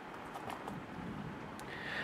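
Quiet room tone: a faint steady hiss with a few soft, faint ticks.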